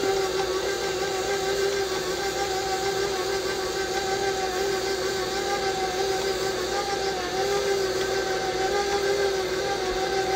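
KitchenAid Professional 5 Plus stand mixer running steadily on low speed, its motor giving a constant, slightly wavering hum as the flat beater churns chocolate cake batter in the steel bowl.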